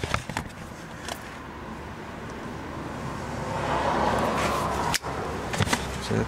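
Handling noise as a click-type torque wrench is set: a few light clicks near the start, then a scratchy rustle that swells and stops abruptly with a click about five seconds in.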